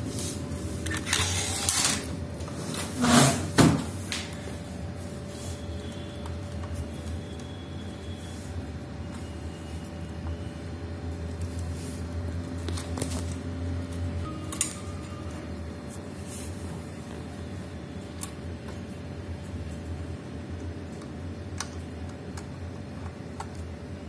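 Hands handling the wire harnesses and plastic parts inside an opened Kyocera printer: rustling and scraping, loudest twice in the first few seconds, then scattered small clicks of connectors and parts.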